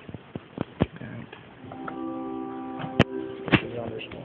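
A Bedient tracker pipe organ sounding a held chord of several steady notes for about two seconds, starting near the middle, in a resonant church. Sharp clicks and knocks come before it and two louder sharp clicks fall during it near the end.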